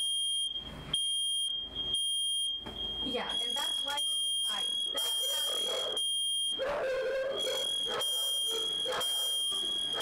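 A steady, high-pitched electronic alarm tone holding one pitch almost without a break, heard over kitchen voices.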